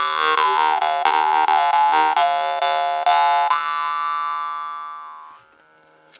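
Stainless steel jew's harp (vargan) tuned to D being played: a steady twanging drone whose overtones shift as the mouth changes shape, plucked about twice a second. After the last pluck, about three and a half seconds in, the tone rings on and fades out over the next two seconds.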